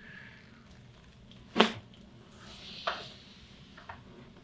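A single sharp crack about one and a half seconds in, from a Gonstead chiropractic thrust on the fifth thoracic vertebra (a 5th Dorsal PL adjustment): the spinal joint cavitating. A second, softer click follows about a second later.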